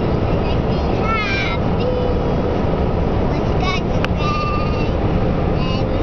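A young girl singing in high, wavering, drawn-out notes over the steady road and engine noise inside a moving car. There is a single sharp click about four seconds in.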